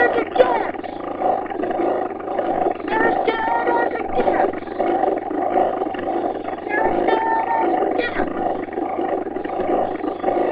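A singer performing a rock cover at home over backing music, loud and close to the microphone. Held sung notes come and go over a dense, steady wall of sound.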